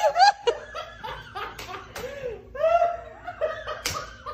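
People laughing in repeated short bursts, with high, wavering giggles and snickers.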